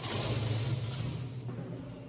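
A sliding glass window slid open along its track: a scraping rush that starts suddenly and fades over about a second and a half. Music plays underneath.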